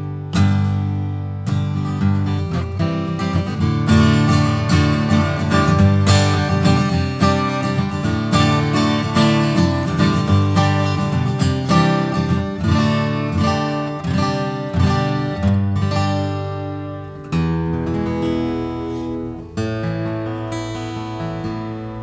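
A mahogany Taylor Grand Pacific acoustic guitar played solo, chords picked and strummed to show off its mahogany tone. It eases into a softer, sparser passage in the last few seconds.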